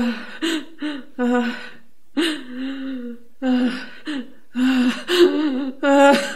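A woman sobbing: short, broken catches of voice and gasping breaths one after another, with a longer wavering cry about two seconds in.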